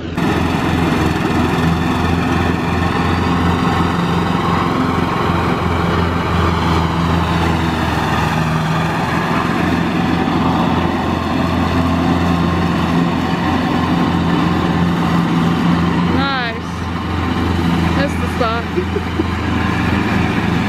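Engine of a Craftsman riding lawn mower running steadily as it drives across the lawn, its pitch wavering slightly.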